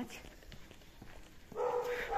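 A dog gives one steady, pitched call lasting about half a second, near the end of a quiet stretch.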